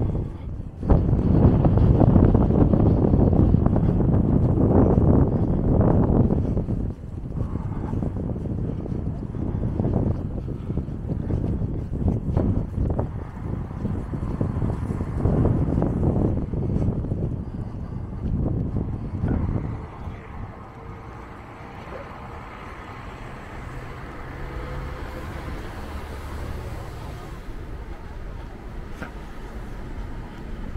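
Wind buffeting the microphone in gusts, heaviest over the first six or seven seconds, then easing to a lower steady rumble of city traffic.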